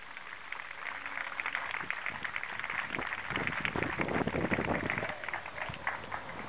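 Crowd of spectators applauding, a dense patter of many hand claps. It swells from about a second in, is loudest in the middle and dies down near the end.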